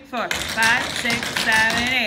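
Tap shoes clicking quickly on a wooden floor as several dancers run through a routine, with a woman's voice calling out over the steps.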